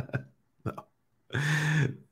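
The tail of a man's laugh, then about half a second of quiet, then one short, low, throaty vocal sound from him held at a steady pitch for about half a second.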